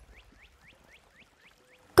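Faint background chirping: a quick series of short, high, rising chirps, about four a second, that stops just before the next line of dialogue.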